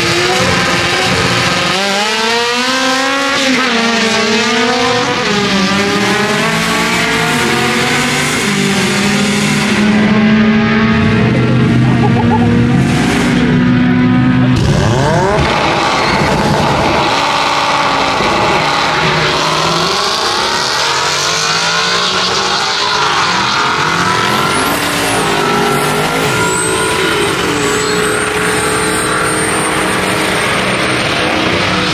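Drag race car engines revving up and down at the start line. About eight seconds in, one is held at a steady high rev for some six seconds before it drops, and the revs climb and fall again.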